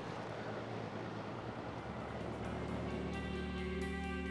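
Background music with held tones fades in about halfway through, over a steady rushing noise of wind and water.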